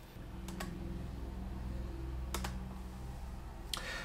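Computer mouse clicks: a couple of sharp double ticks, the press and release of the button, about half a second in and again past two seconds, with another near the end, over a steady low hum.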